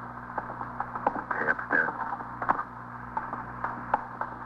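Radio sound-effect footsteps walking, a few steps a second, over a low steady hum.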